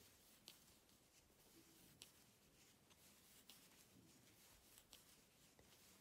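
Near silence, with faint soft ticks about every second and a half as loops of wool yarn are picked up onto a wooden crochet hook.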